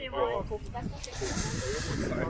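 A person's voice talking during the first second. It is followed by a steady high hiss lasting about a second.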